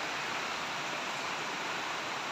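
Heavy rain falling steadily during a typhoon, an even hiss with no other distinct sounds.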